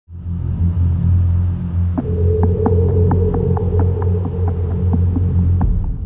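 Dramatic intro sound design: a deep, throbbing low drone. About two seconds in, a higher held tone and a steady ticking, about four ticks a second, join it, and it all fades out at the end.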